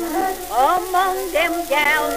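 Early acoustic 78 rpm gramophone recording of the song's instrumental accompaniment. A melody line wavers with vibrato and slides sharply upward about half a second in, under a steady crackling hiss of shellac surface noise.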